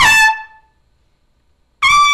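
Trumpet playing high notes: a held note steps down and dies away just after the start, then after about a second's pause a new high note begins near the end.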